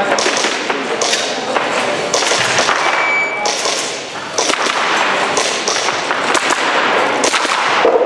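Airsoft pistol firing quick strings of sharp shots, echoing in a large indoor hall. A brief high beep sounds about three seconds in.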